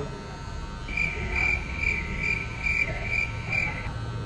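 Electric hair clippers running close to the ear. A high tone rises and falls in level about twice a second, from about a second in until near the end.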